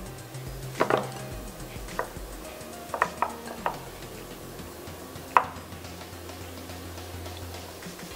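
Scattered sharp clicks and knocks as a crumbly almond-flour dough is worked in a glass mixing bowl, first with a silicone spatula and then by hand, with the spatula laid down on a wooden cutting board; the sharpest knock comes about five seconds in. A faint low hum runs underneath.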